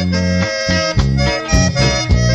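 Instrumental break of a norteño song: an accordion plays the melody in held notes over a rhythmic bass and guitar accompaniment.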